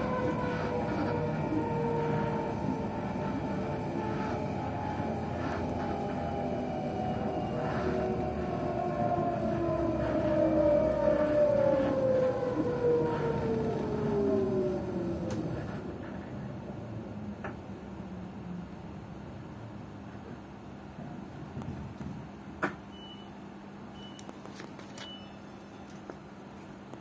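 Electric train decelerating: the traction motor whine, several tones together, falls steadily in pitch as the train slows into a station, then fades about halfway through, leaving a low running rumble. Near the end comes one sharp click and three short high beeps.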